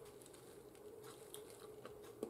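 Near silence: room tone with a faint steady hum and a few faint small clicks.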